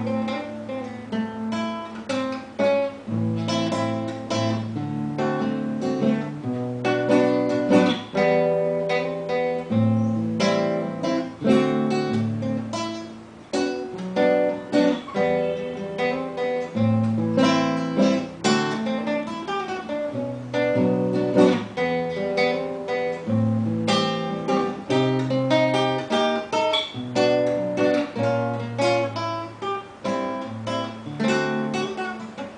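Solo classical acoustic guitar playing an instrumental melody, with plucked melody notes over a moving bass line.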